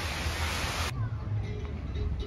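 A steady rushing noise of outdoor wind or water for about the first second, cut off suddenly and replaced by light background music with short repeated notes over low pulses.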